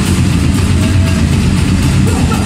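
Live grindcore band playing at full volume: heavily distorted guitars and bass in a dense, unbroken low rumble under drums and cymbals.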